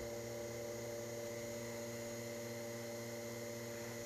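Steady, faint low electrical hum that stays unchanged throughout.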